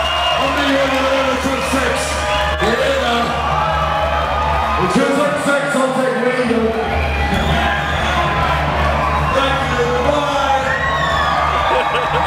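Live hip hop set through a festival PA: a heavy bass beat with shouted vocals, and the crowd whooping and cheering. The bass cuts out for a second or two about halfway through, then comes back in.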